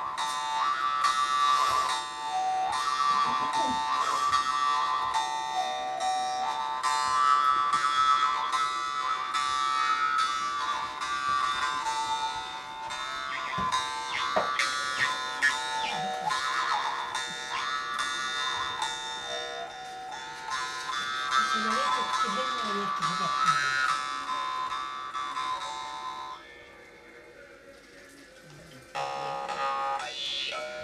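Yakut khomus (jaw harp) played fast: a steady buzzing drone struck in an even, quick rhythm, with a melody of gliding overtones shaped by the mouth. It breaks off about three-quarters of the way through for a couple of seconds, then starts again just before the end.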